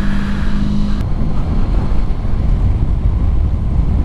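Honda ST1100 Pan European's V4 engine running at a steady road pace, with wind and road rumble. A steady engine tone stops abruptly about a second in, leaving mostly wind and road rumble.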